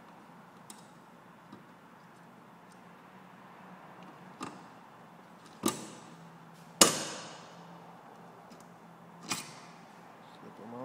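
Bolt cutters snipping wire: a series of sharp metallic snaps, small clicks early on and louder ones later, the loudest about seven seconds in ringing briefly.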